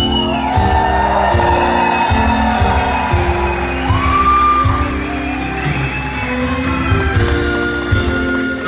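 Orchestra playing a slow, sustained instrumental introduction, with audience cheering, whoops and a whistle over it, loudest about four seconds in.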